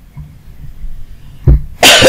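A man coughing loudly near the end, a couple of harsh bursts just after a short low puff.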